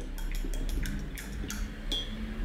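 A quick, uneven run of light clicks and taps, several a second, with a brief high ring near the end.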